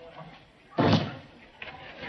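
A door slammed shut once, a single loud bang about a second in.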